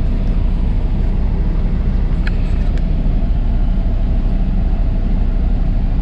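Semi-truck diesel engine running, heard from inside the cab as a steady low rumble, with a couple of faint clicks a little over two seconds in.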